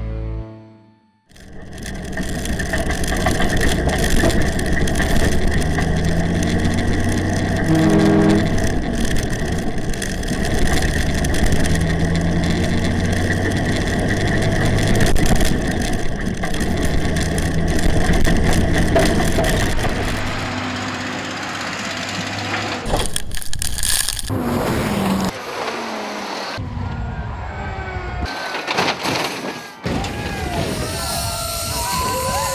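Ford prime mover's engine running hard under acceleration, heard from the cab, with the pitch shifting as it works through the gears.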